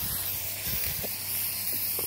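Aerosol spray paint can spraying onto nylon umbrella fabric: a steady hiss, with the can's paint running low.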